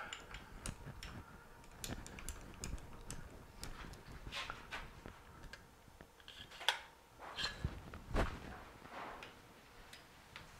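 Scattered light clicks and knocks of metal tools and parts being handled at a lathe's tool post, with a sharper click near seven seconds and a dull thump about a second later.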